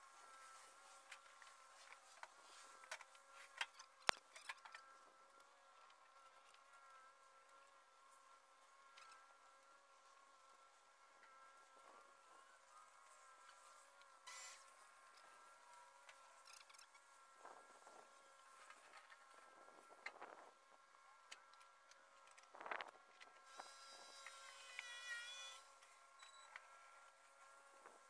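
Near silence with faint, steady insect buzzing throughout, a few faint clicks, and a brief higher-pitched sound near the end.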